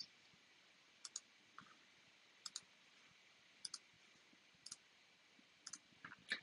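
Faint computer mouse clicks: about six short double clicks, roughly one a second, in a nearly silent room.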